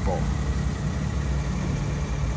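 Steady low drone of an idling engine.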